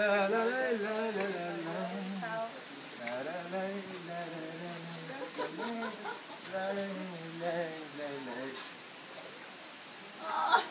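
A man singing a wordless waltz tune, in long held phrases with short gaps between them, dying away near the end.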